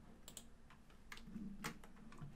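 A handful of faint, scattered keystrokes on a computer keyboard as a line of code is finished and a new line is started.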